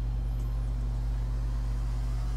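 A steady low hum, even in level, with nothing else happening.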